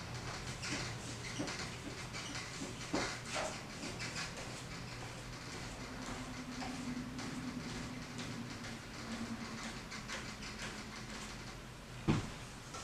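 Paintbrush working oil paint onto a canvas: a run of irregular, short scratchy strokes.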